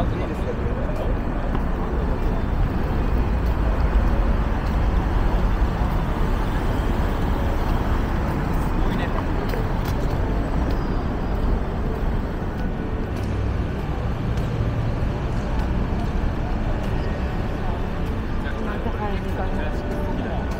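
Busy city-street ambience: voices of passing pedestrians talking over a steady background of road traffic, with cars driving by.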